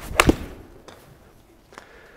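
Golf iron shot off a hitting mat: a brief swish of the downswing, then a sharp crack of the club striking ball and mat, followed at once by a second knock.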